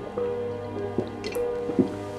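Soft background music with long held notes, over a man gulping down a drink from a mug in a few loud swallows, the loudest near the end.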